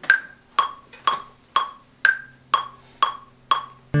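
Metronome click track at about 120 beats a minute: eight clicks, two a second, the first of each group of four higher in pitch, making a two-bar count-in. The electric guitar comes in right at the end.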